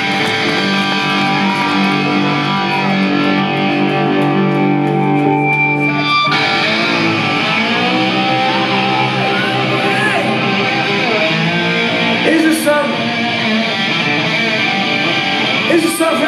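Amplified electric guitar played live, letting chords ring out, with a change of chord about six seconds in.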